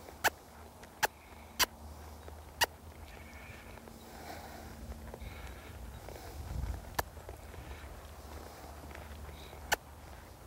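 A young horse walking under saddle on sand footing: soft hoof steps and tack over a low rumble, with about six sharp, irregularly spaced clicks and one dull thump about two-thirds of the way through.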